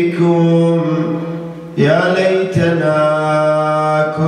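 A man's voice chanting a mournful Arabic religious elegy into a microphone in long, drawn-out notes. He takes a short breath a little before halfway and starts a new phrase.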